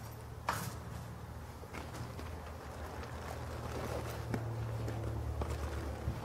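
Handling noise of camping gear: a few soft knocks and rustles as a first aid kit is set down and a backpack is rummaged through, the clearest knock about half a second in. Under it runs a steady low rumble that grows a little in the second half.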